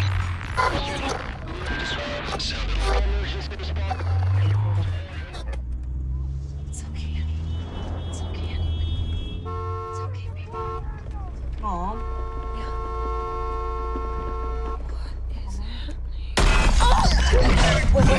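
Film soundtrack heard from inside a moving car: a low steady engine rumble, with held, evenly stacked tones that break off briefly and dip in pitch once in the middle, and a sudden loud rush of noise starting near the end.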